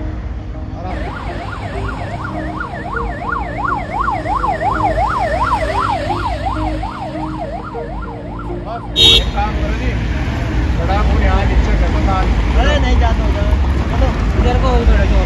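Ambulance siren sounding a fast yelp, rising and falling about three times a second. It stops abruptly with a sharp click about nine seconds in, after which a louder low traffic rumble with faint voices remains.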